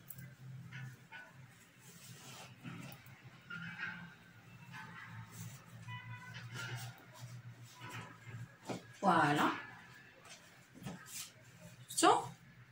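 Faint rustling of cotton fabric as a belt is tied and a blouse is smoothed and adjusted by hand, with a short voice-like sound about nine seconds in.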